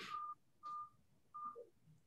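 Three short electronic beeps at one steady pitch, spread over about a second and a half.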